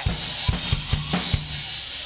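Live band's drum kit playing a beat, with repeated kick drum hits, a steady cymbal wash and low bass notes held underneath.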